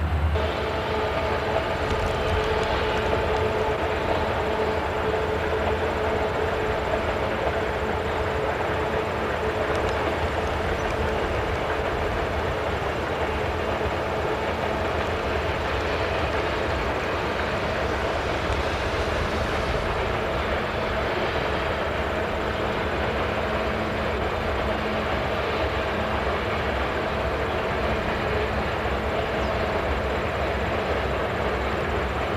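SOO Line diesel locomotives hauling a freight train, their engines droning steadily over the continuous rumble of the train.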